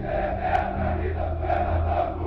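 Many voices chanting in unison in a regular pulse, about two a second, over a deep sustained music tone from a military motivational video's soundtrack.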